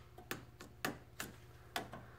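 Four short, sharp clicks, unevenly spaced, over a low steady electrical hum.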